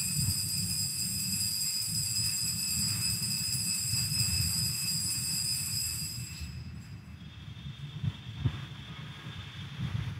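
Consecration bell ringing at the elevation of the chalice: a high, steady ringing tone with overtones that fades out about six and a half seconds in, followed by a fainter, higher tone over a low church rumble.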